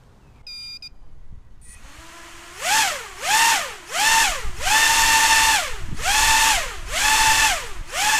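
Quadcopter's four DYS BE1806 brushless motors with tri-blade 5045 props on a 4S battery, weighed down with bricks, spinning up after a couple of quiet seconds. The throttle is punched about six times: a buzzing whine rises sharply and drops back each time, with the middle punches held longer.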